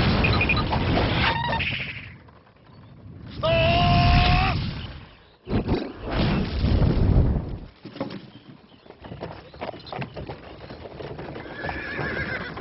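A horse whinnies once, a single call of about a second, some three and a half seconds in. Around it are loud stretches of noise at the start and again past the middle, and quieter scattered clattering toward the end.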